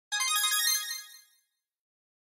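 A short, bright intro jingle of quick high chime-like notes, lasting about a second and fading out.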